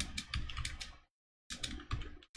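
Rapid typing on a computer keyboard: a quick run of keystrokes, a brief pause about a second in, then another run.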